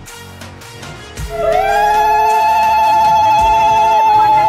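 Background music, then from about a second in, several loud, warbling high held tones from more than one voice that glide and overlap: women ululating (ulu-dhwani) at a Bengali wedding ritual.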